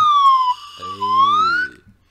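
A whistle blown in one long, loud note that dips in pitch and rises back again, siren-like. A voice joins in underneath about a second in.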